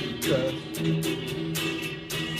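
A man singing while strumming a guitar, about three to four strums a second, with a short sliding sung note near the start.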